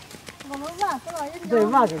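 People talking, with a few short clicks in the first half second.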